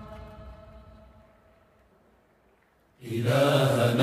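A long held note fades away to near silence. About three seconds in, a chorus of men's voices comes in suddenly and loudly, chanting together.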